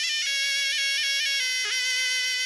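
Tunisian zukra, a double-reed shawm, playing a melody of long held notes with a quick dip in pitch near the end.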